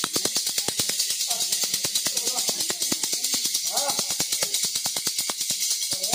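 Fast, steady rhythmic metallic jingling, like shaken jingles or a tambourine, keeping an even beat for ritual music. A voice comes in at intervals over it.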